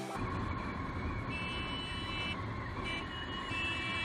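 Steady riding noise from a TVS Star City Plus commuter motorcycle at road speed. A car horn honks three times over it: a beep of about a second starting just over a second in, then a short beep, then another running to the end.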